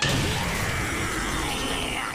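Cartoon soundtrack sound effect: a sudden loud noise that cuts in abruptly and holds steady for about two seconds, its pitch sagging slightly.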